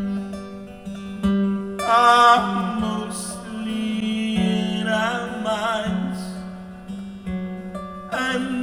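Acoustic guitar played live with a man singing, the sung phrases coming in about two seconds in and again around five seconds in over the held guitar notes.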